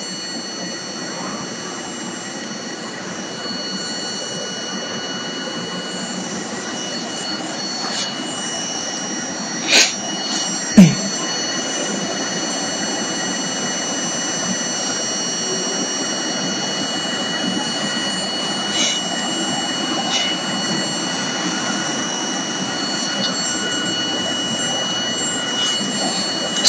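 Vibratory stress relief exciter motor running up in speed in manual speed-up mode, reaching just over a thousand rpm: a steady mechanical whirr with thin high whining tones that grows gradually louder. Two sharp knocks about ten and eleven seconds in, the second the loudest.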